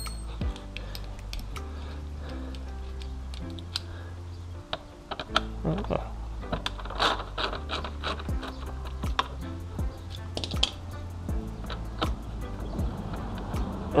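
Background music throughout, over irregular light clicks and rattles from a socket wrench with an extension working a bolt on a motorcycle's fairing.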